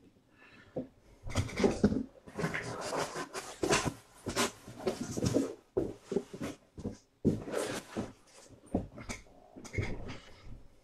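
Irregular rustling and scraping as sealed cardboard trading-card boxes are handled and slid about on a table, in short uneven bursts.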